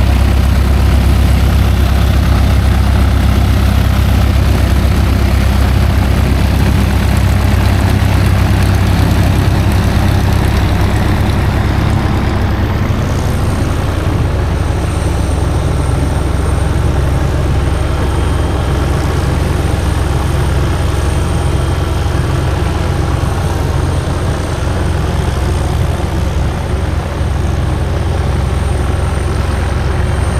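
Piston engine and propeller of a small single-engine light aircraft running steadily as it taxis, a loud, low, even drone.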